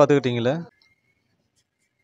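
A person's voice speaking briefly in the first second, then nothing.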